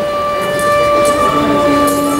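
Folk music for a Punjabi dance: a wind instrument holds one steady high note, joined by a lower note past the middle, over a few dhol drum strokes.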